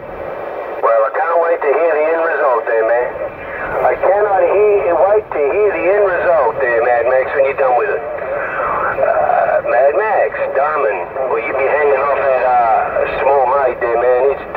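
Voices of other stations coming in over a Cobra 148 GTL CB radio's speaker, thin and telephone-like, talking almost without a break.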